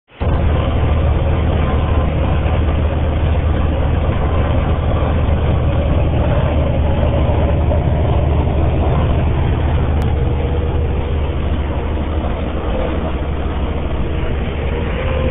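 Steady road, wind and engine noise heard from inside a moving vehicle at highway speed, with a constant low drone underneath.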